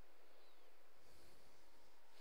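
Faint, steady background hiss of room tone and microphone noise, with no distinct sound events.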